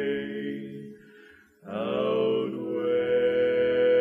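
Barbershop quartet singing unaccompanied four-part close harmony on long held chords. A chord dies away about a second in, there is a brief silence, and then the voices come back in together on a new chord and sustain it.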